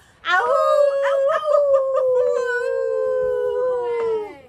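A woman and a boy howling like wolves together: one long howl that swoops up at the start and then slowly sinks in pitch.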